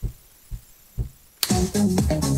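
A house track cut out on a DJ mixer so that only the kick drum is heard, thumping about twice a second. The full track snaps back in about one and a half seconds in.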